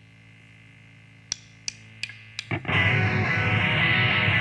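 Opening of a distorted rock demo: a quiet, steady held guitar tone, then four evenly spaced sharp clicks, and about two and a half seconds in the full band comes in loud with distorted electric guitars, bass and drums.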